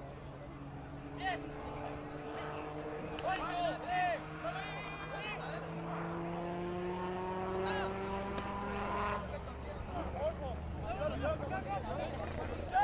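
A motor vehicle's engine running off-screen, its pitch rising slowly and steadily as it accelerates, then stopping about nine seconds in. Short shouts from players break in over it.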